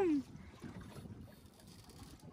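A long shout dies away with a falling pitch just at the start, then only faint wind and sea noise on an open boat.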